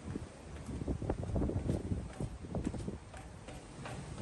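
Footsteps on a ship's steel stairs and deck: an uneven series of short knocks.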